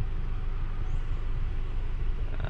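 Steady low rumble with an even hiss: background noise in a parked car's cabin with the climate control running.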